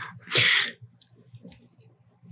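A man's single short, sharp burst of breath through the mouth and nose, with faint small clicks and rustles after it.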